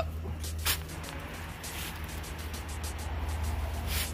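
Pitchfork tines digging into and turning a compost pile of wood chips and leaves, with scraping and crunching and one sharper strike under a second in. A steady low hum runs beneath.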